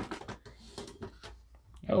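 A metal lunchbox tin being handled and opened: a sharp click at the start, then faint clicks, taps and a light rustle from the latch and lid.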